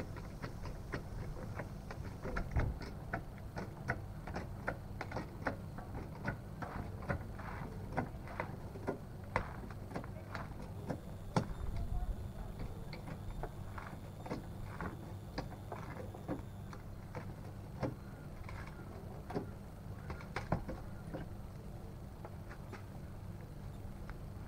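Goodyear 2-ton hydraulic trolley jack being worked by its handle to lift a car: an uneven run of short clicks and knocks, about one or two a second, over a steady low rumble.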